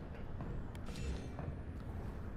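Faint low background hum of video game ambience, with a few soft clicks and a brief hiss about a second in.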